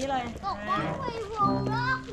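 Voices of an adult and children talking and calling out, with a steady held tone in the second half.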